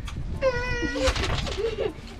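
A child's voice drawing out a high-pitched 'aaand' at one steady pitch for about half a second, then a lower, wavering vocal sound, meow-like in tone.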